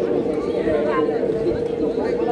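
Chatter of several people's voices, unclear and overlapping, over a steady humming tone.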